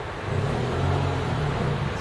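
A motor vehicle passing on the street: a low engine hum that builds about half a second in and eases off near the end.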